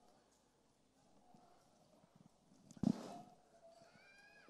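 A near-silent pause with faint room tone, broken by one short dull thud about three seconds in.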